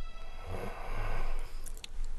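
A man snoring in his sleep: two snores about half a second apart, then a few short high clicks near the end.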